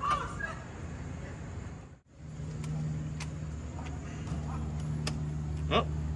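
Steady low hum of an idling engine, with a few faint sharp clicks. The sound drops out briefly about two seconds in.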